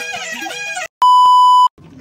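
Background music stops abruptly, and after a brief silence a loud, steady electronic beep tone sounds for under a second.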